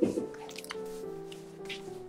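Soft yeast dough squishing and slapping against a floured board as it is kneaded, loudest right at the start, with a few smaller wet squelches after, over background music of held notes.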